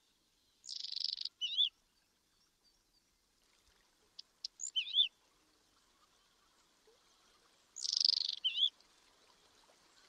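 A songbird singing short phrases three times, each a buzzy note or a few clicks followed by quick wavering whistled notes, with pauses between.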